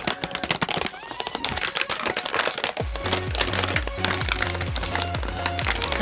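Stiff clear plastic packaging of a toy karaoke microphone crackling and clicking as it is pulled and twisted to get the microphone out. A music track with a steady bass beat comes in about three seconds in.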